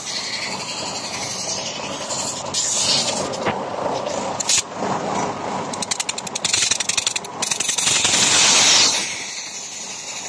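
Compressed air hissing from a truck's air system while its compressor is tested, over steady mechanical noise, with a run of rapid clicking in the middle and the loudest hiss near the end.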